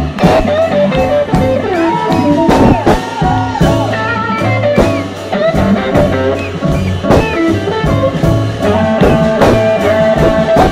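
A live blues band playing an instrumental passage, with electric guitar over upright bass and drums and bending melody notes throughout.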